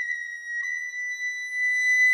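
Solo recorder holding one long, high note that drifts slightly upward in pitch.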